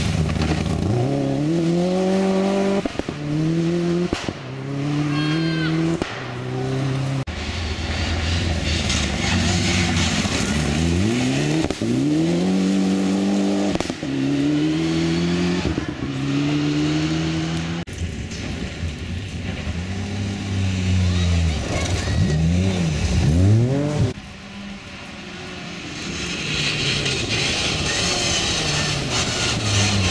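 Rally car engines accelerating hard through the gears on a gravel stage. Each engine note climbs and breaks off at every upshift, several cars passing in turn, with a quieter spell a little before the end as the next car comes up.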